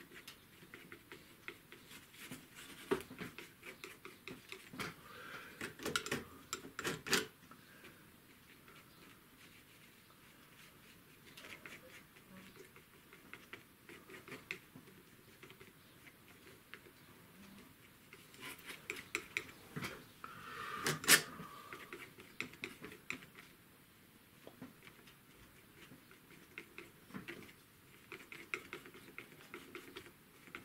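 Palette knife working oil paint onto primed paper on a board: irregular light taps, clicks and short scrapes. The scraping is busiest in the first seven seconds and again about two-thirds of the way through, with one sharper click just after that middle.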